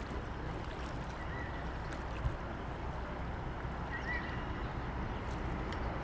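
Steady ambience on a fishing boat on a lake: an even low rumble and hiss of water and wind, with a single soft knock about two seconds in and a few faint high chirps.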